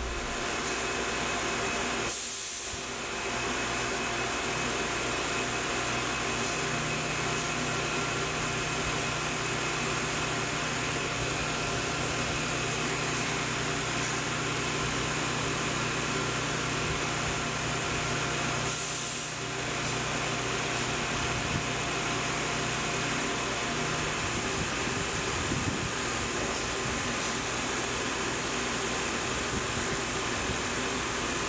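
Tormach 1100M CNC mill face-milling an aluminium plate: the spindle runs and the cutter machines steadily, a constant noise with a few held tones. It dips briefly about two seconds in and again a little before the twenty-second mark.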